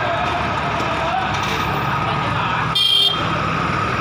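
Steady street and vehicle engine noise, with one short, sharp vehicle horn toot about three seconds in, the loudest sound.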